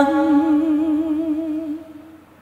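A woman's voice holding one long sung note with an even vibrato, with almost no accompaniment under it, fading out near the end.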